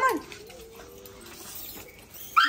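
A dog whining: one faint, thin, long whine with a slightly wavering pitch, lasting over a second.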